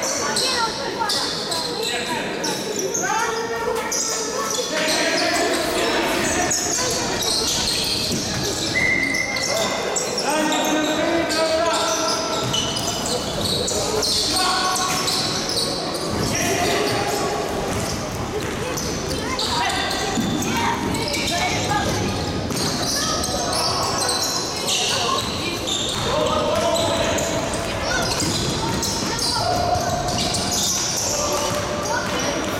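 Basketball game sounds in a large gymnasium hall: a ball bouncing on the court and players calling out, all echoing.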